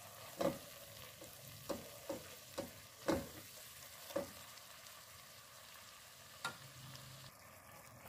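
Onion-tomato masala frying in oil in a pot with a faint sizzle while a silicone spatula stirs it, giving several short scraping knocks against the pot, the loudest about three seconds in. The spices are being fried into the masala base.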